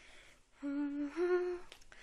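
A voice humming two held notes, the second a little higher, about half a second in.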